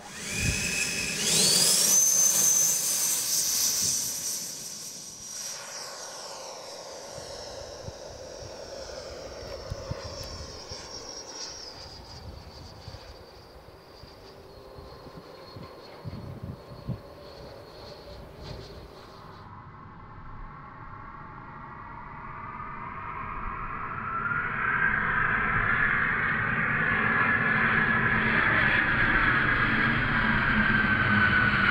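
Schubeler 120 mm electric ducted fan in a Sebart Avanti XS RC jet spooling up with a fast rising whine, then a high whine that slowly falls in pitch and fades as the jet moves away. From about two-thirds of the way in, the fan whine of the jet in flight grows steadily louder as it comes by on a pass.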